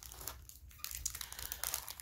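Plastic snack packaging crinkling as it is handled: a run of small crackles that grows busier about a second in.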